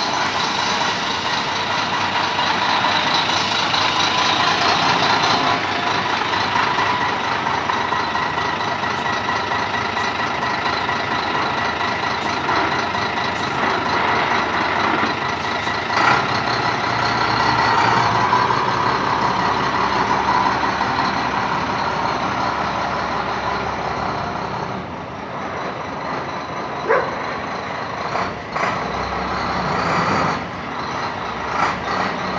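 Heavy truck's diesel engine idling steadily, with a faint steady whine over it. There are brief sharp sounds about halfway through and again near the end.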